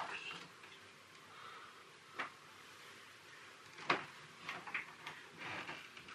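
Quiet room tone broken by a few isolated sharp clicks: two distinct ones about two and four seconds in, then a few softer ticks near the end.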